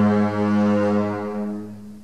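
Double bass ensemble bowing a long, low sustained note that fades away over the last second.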